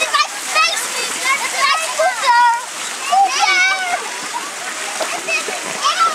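Children's high voices shouting and calling over the steady splash of water pouring from a pool fountain into a shallow pool.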